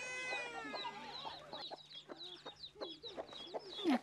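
Hen clucking with her chicks peeping, a rapid run of short low clucks and high, falling peeps. It opens with one long drawn-out call in the first second.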